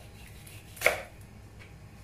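A single knife chop through a piece of fish onto a cutting board, a sharp stroke about a second in.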